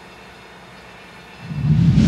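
Faint steady background noise, then a loud low whooshing rumble swelling up near the end: a news-programme transition sound effect accompanying a graphic wipe.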